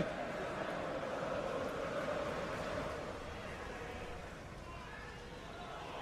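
Football stadium crowd: a steady din of many voices that eases a little after about three seconds.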